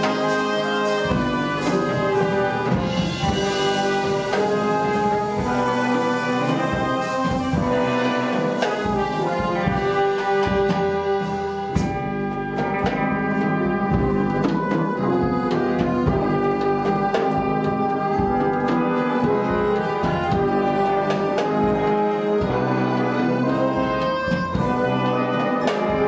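A wind orchestra with brass playing slow, held chords in a quiet arrangement of a Hasidic nigun.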